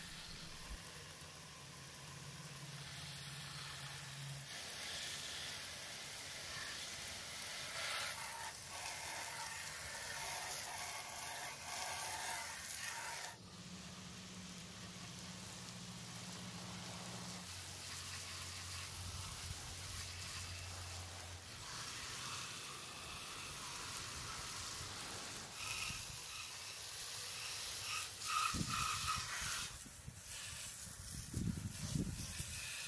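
Water from a garden hose spraying onto a lawn edger's engine and plastic deck, a steady hiss and splash. It breaks off abruptly about thirteen seconds in and carries on.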